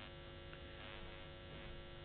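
Faint, steady electrical mains hum, several steady tones with a little hiss, between bursts of speech.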